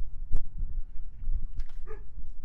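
Wind buffeting the microphone in an uneven low rumble, with a sharp click about a third of a second in and a short pitched call near the end.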